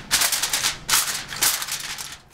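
Aluminium foil crinkling in several short bursts as hands press and crimp it down around the rim of a glass baking dish.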